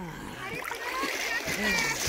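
River water splashing and sloshing around a wading person, picked up with the microphone right at the water surface.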